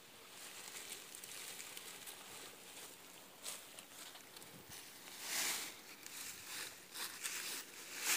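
Dry leaf litter and cedar boughs rustling and scuffing as a person crawls out through the entrance of a leaf-covered debris hut, in a few soft bursts, the loudest about five seconds in.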